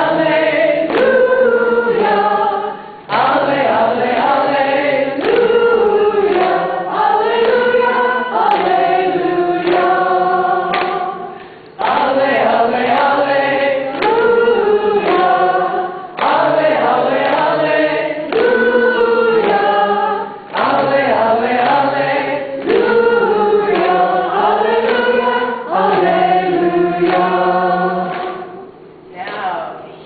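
A group of voices singing a hymn together, unaccompanied, in sung phrases of several seconds with brief pauses between them.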